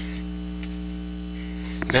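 Steady electrical mains hum, a low even buzz with its overtones, with a soft click near the end.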